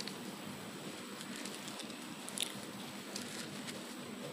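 Faint steady hiss of room tone picked up by the pulpit microphone, with a small faint click about two and a half seconds in.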